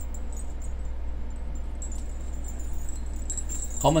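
Faint jingling of the silver coin dangles on a Hmong embroidered vest as the wearer moves to drink from a mug, over a steady low electrical hum.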